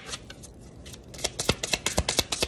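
A deck of cards being shuffled by hand: faint at first, then, a little over a second in, a quick run of sharp card clicks, about five or six a second.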